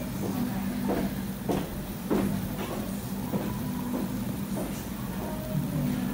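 Road and tyre noise inside the cabin of a Tesla moving at motorway speed: a steady low rumble with a run of soft knocks about every half second. It is heard through a conference hall's loudspeakers.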